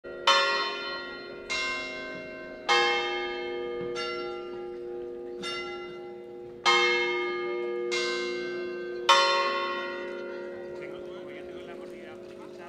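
Church tower bells struck eight times at a slow, slightly uneven pace of about one stroke every second and a quarter, in at least two pitches with the louder strokes alternating with softer ones. Each stroke rings on and overlaps the next, and the ringing fades out after the last stroke about nine seconds in.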